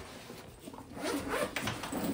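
Zipper on a black fabric bag being pulled, with the bag's fabric rustling as it is handled, getting louder about a second in.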